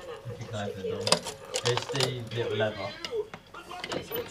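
Low, indistinct voice talking, broken by a few sharp clicks and knocks, the loudest about a second in.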